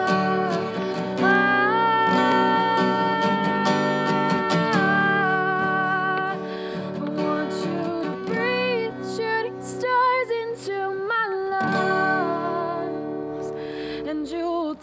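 Breedlove acoustic guitar strummed, with a woman's voice singing long held notes that bend in pitch.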